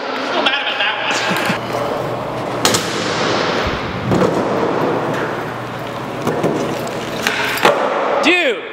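Skateboard wheels rolling steadily across a concrete floor, with a sharp clack of the board about two and a half seconds in and a duller thud about a second later, and more clacks near the end.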